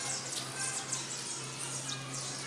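Outdoor background noise: a steady low hum under faint, indistinct voices.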